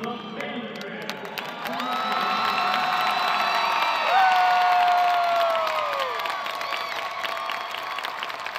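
Large crowd cheering and screaming, swelling about a second and a half in. One long high scream near the middle slides down in pitch and fades.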